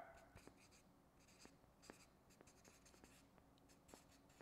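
Felt-tip marker writing on flip-chart paper: faint, scattered short scratches and taps as the letters of a word are drawn.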